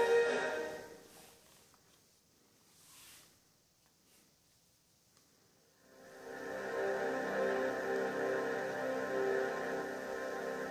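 Orchestral studio-logo fanfare from a TV's speakers fading out in the first second or so, a few seconds of near silence, then soft sustained ambient music starting about six seconds in.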